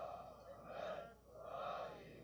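Faint breathing and sniffling from a man holding a tissue to his nose, coming in a few soft swells.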